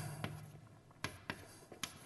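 Chalk on a blackboard as an equation is written: a few short, sharp taps and strokes, two close together about a second in and another near the end.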